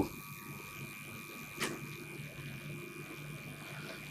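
Steady electrical hum and whine from a conference hall's sound system during a pause in speech, with a brief click about one and a half seconds in.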